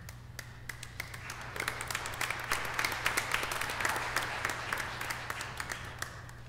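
A small congregation applauding. The clapping swells about a second and a half in and dies away near the end.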